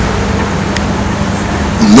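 Steady low background hum with a faint steady tone in it, during a gap in speech, and a single short click about three-quarters of a second in.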